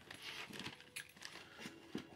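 Faint rustling of wrapping paper with a few light, scattered clicks as a small dog noses at a partly opened gift-wrapped box.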